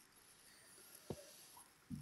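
Near silence: room tone, with a faint click about a second in and a faint low thud near the end.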